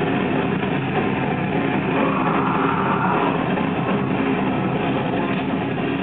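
Live rock band playing loud and without a break: electric guitar and drum kit.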